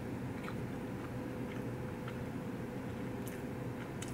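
Quiet chewing of a mouthful of pasta salad, with a few faint soft clicks over a steady low hum.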